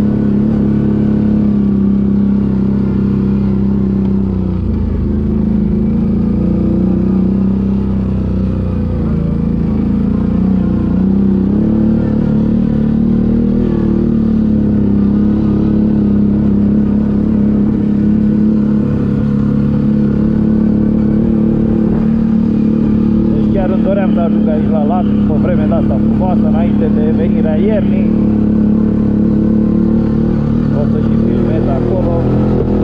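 CFMoto CForce ATV engine running steadily as the quad climbs a rough dirt track at low speed, its pitch dipping and picking up again a few times in the first ten seconds as the throttle eases and opens.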